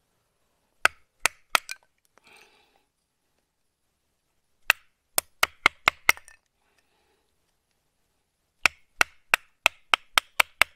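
Batoning: a wooden baton striking the spine of the FoxEdge Atrax knife, with its 3 mm thick 9Cr13 steel blade, driving it through small sticks to split kindling. The strikes come as sharp wooden knocks in three runs of four to six, a few per second.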